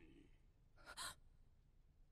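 Near silence, broken about a second in by one short, sharp intake of breath, a gasp.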